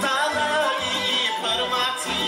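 A man singing a Bulgarian folk song with a wavering, ornamented melody, accompanied by a folk ensemble of winds, accordion, double bass and tapan drum.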